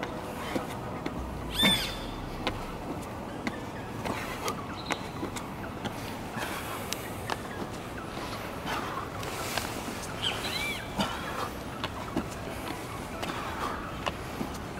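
Outdoor ambience: a steady hum of distant traffic with a few short bird calls, one about two seconds in and more near eleven seconds. Faint scattered taps come from shoes and hands landing on a hard sports court during burpees.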